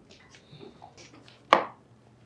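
A single sharp thump about one and a half seconds in, after a few faint clicks and rustles of movement.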